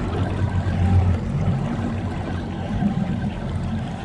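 Steady wind and water noise on a drifting boat: a low rumble with waves sloshing against the hull.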